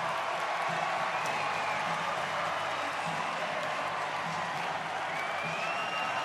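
Ballpark crowd cheering and applauding as one steady, even roar, with a faint high shout or whistle rising out of it near the end.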